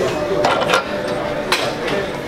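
Weight plates on a plate-loaded press machine clanking once, sharply, about a second and a half in, as a too-heavy lift is set back down; gym voices murmur throughout.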